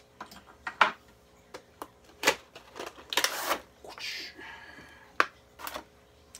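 A cardboard action-figure box being opened by hand and its clear plastic tray pulled out: a string of separate clicks, scrapes and plastic crackles, the longest rustle about three seconds in.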